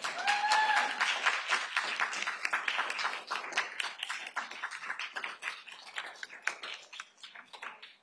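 Applause from a small group of people clapping in a room, many separate claps that thin out toward the end. A short high cheer rises and falls within the first second.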